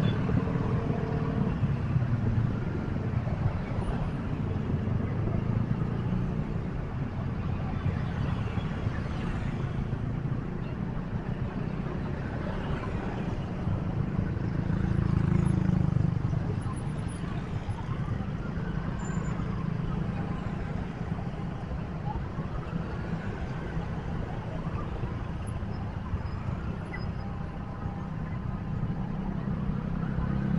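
Dense city road traffic: cars and motorcycles running past in a continuous low rumble of engines and tyres, swelling louder around the middle.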